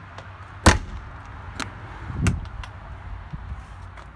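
A horse-trailer manger door being unlatched and swung open: a sharp metallic clack about a second in, a heavier thud around two seconds in, and a few lighter latch clicks.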